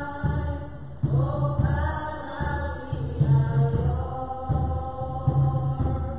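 Voices singing a hymn in long, held notes over a steady low beat of about one a second.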